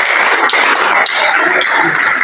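A loud, steady rushing noise, with faint voices under it.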